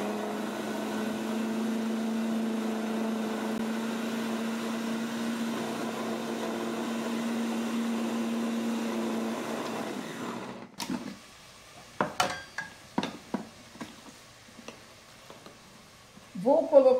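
Countertop food processor motor running steadily, grinding soaked bulgur wheat and ground beef into kibbeh dough, then cutting off about ten seconds in. A few short knocks follow.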